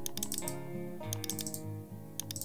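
Computer keyboard clicking in short, quick runs of keystrokes over soft background music with slow, held notes.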